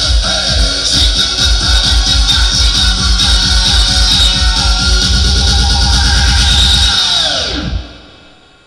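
Electronic dance music played loud through a MaxiAxi "Bass Punch" PA speaker, with a heavy pulsing bass beat. Near the end the whole track drops in pitch and dies away, like a record being stopped.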